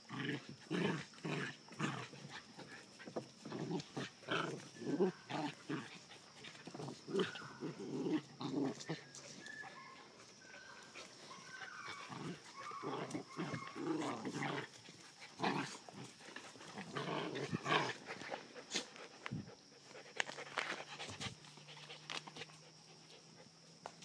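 Puppies play-fighting, with short, irregular bursts of growling and yapping throughout.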